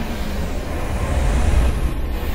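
A deep, steady rumble with a hiss over it, swelling slightly toward the end: a sound-design drone in the intro soundtrack.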